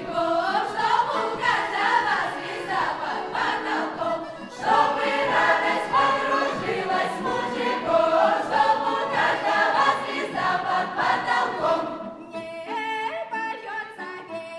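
Russian folk choir of mixed voices singing together in full chorus. About twelve seconds in, the dense choral sound thins out to fewer voices.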